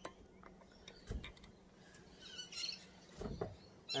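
Bricks set down one at a time on wire mesh over garden soil: a soft thud with a little scrape about a second in, and another a little after three seconds in. A bird chirps briefly between them.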